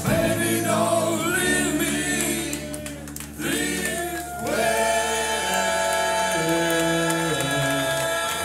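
Vocal group singing in close harmony with the band dropped out, nearly a cappella: gliding sung phrases, a short dip about three seconds in, then long held chords.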